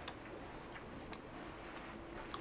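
Quiet room tone: a faint low hum with a few soft scattered ticks.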